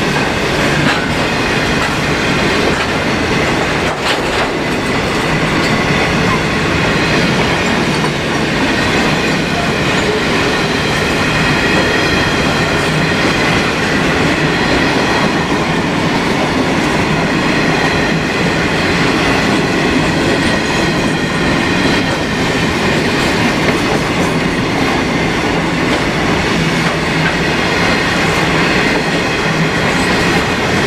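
Grain train's steel-wheeled hopper wagons rolling past at speed: a loud, steady rumble and clatter of wheels on rail, with a high-pitched squeal from the wheels running through it.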